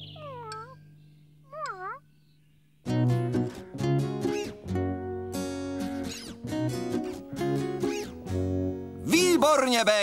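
An animated cat meows twice, each a short wavering call. About three seconds in, light background music with plucked notes starts, and a voice comes in at the very end.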